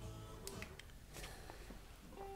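Faint music of short, held notes at different pitches, played from a Denon DN-500CB CD player through an amplifier and passive speakers.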